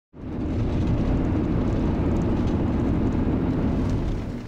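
A car driving: steady engine hum and road rumble.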